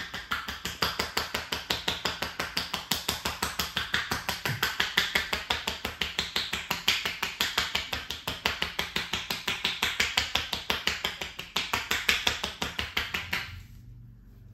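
Percussive back massage with the palms held together, the joined hands striking the back in a fast, even rhythm of sharp claps, about five a second. The claps stop shortly before the end.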